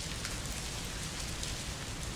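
Pages of many Bibles being turned across a congregation: a soft, steady rustle of thin paper.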